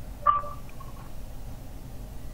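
Low, steady background hiss of a video-call audio line, with one short, faint blip about a quarter of a second in.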